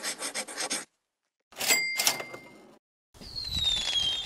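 Logo-animation sound effects: a rapid scratchy scribble, like a pen drawing, that stops just under a second in. Then a swoosh with a short bright ring, and a second swoosh carrying a falling whistle near the end.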